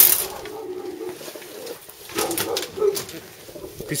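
Chinese Owl pigeons cooing in a loft, with a sharp knock right at the start.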